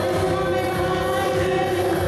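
A song sung into a microphone and played through a PA loudspeaker, with long held notes and music.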